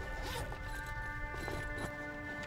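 A zipper being pulled open on a fabric medical bag in two short rasping pulls, over a sustained music score.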